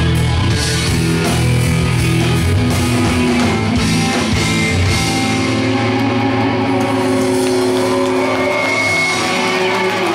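A live band playing a loud rock number led by electric guitar over bass and drums.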